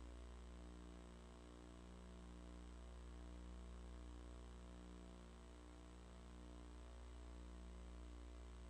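Near silence with a steady electrical mains hum in the audio feed.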